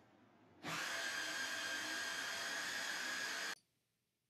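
Small electric food processor motor running for about three seconds with a steady whine while its blade grinds a thick cauliflower, cheese, flour and egg batter; it starts about half a second in and cuts off suddenly near the end.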